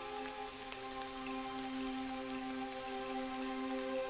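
Steady rain falling, under soft film-score music holding long sustained notes.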